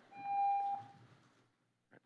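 A single steady electronic beep, one plain tone about a second long that stops about a second in. It is typical of a public-comment speaking timer marking the end of a speaker's allotted time.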